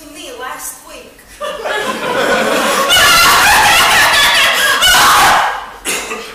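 Theatre audience laughing: a loud burst of laughter swells about a second and a half in, holds for a few seconds and dies away near the end.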